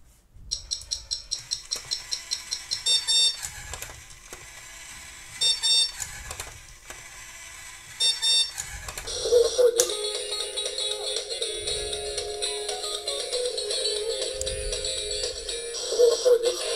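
Electronic alarm of a Mattel Cars Cozy Cone toy alarm clock: a fast run of high beeps, about five a second, for the first three seconds. Short beeping trills follow at about five and a half and eight seconds. From about nine seconds in, music plays.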